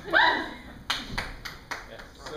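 A brief rising vocal whoop, then a handful of sharp, irregular hand claps over about a second.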